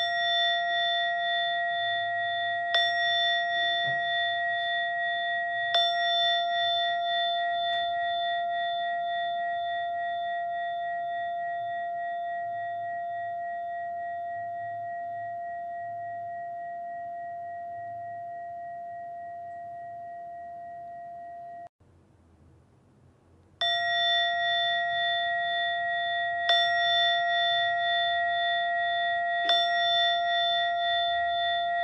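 A meditation bell chime, like a singing bowl, struck three times about three seconds apart and left to ring down slowly. It cuts off suddenly about two-thirds through, and the same three-strike chime starts again about two seconds later: a timer sounding the end of a meditation session.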